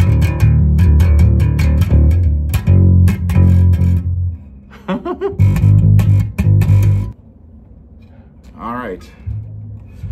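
Left-handed Fender Precision electric bass plucked with the fingers, played haltingly by a right-handed player trying it left-handed: phrases of low notes that stop about four seconds in, start again, and break off about seven seconds in, leaving only a faint note near the end.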